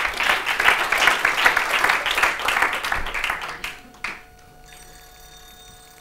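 Audience applauding after a talk: a small crowd clapping steadily, then dying away about four seconds in.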